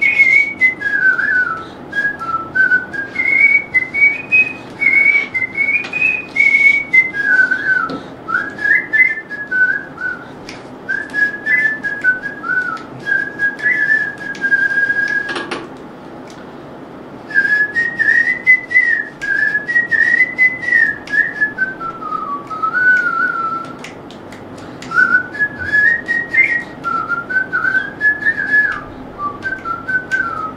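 A man whistling a song melody through his lips: a single clear tune wandering up and down, with two short breaks for breath about halfway and two-thirds of the way through.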